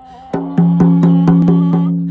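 Hide-headed hoop frame drum struck about seven times in a quick, even run of about four beats a second, starting a moment in. The head rings on one steady pitch, kind of a teeny pitch, that fades away after the last stroke near the end.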